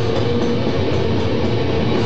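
Live heavy metal band playing loud, with distorted electric guitar in a dense, steady wall of sound.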